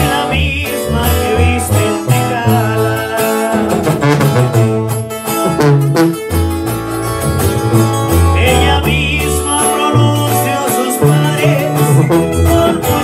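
A sousaphone-and-guitar band plays an instrumental passage: a sousaphone bass line moves under strummed guitars, with a brass horn in the ensemble.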